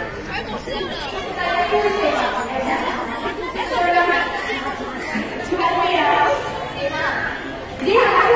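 Speech only: girls talking over one another, with chatter from the crowd around them.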